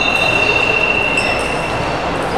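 Basketball-hall background noise with a thin, steady high-pitched squeal held for most of two seconds. The squeal stops shortly before the end, and a shorter, higher tone drops out about half a second in.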